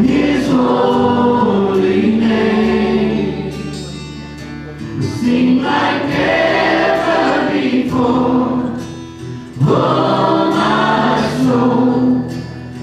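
A church worship team singing a slow worship song together over acoustic guitar and band accompaniment. The sung phrases swell and ease back, with short lulls between them.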